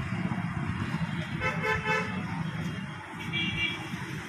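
Street traffic: an engine runs steadily close by, and a vehicle horn toots briefly about a second and a half in, followed by a second, higher-pitched horn a little after three seconds.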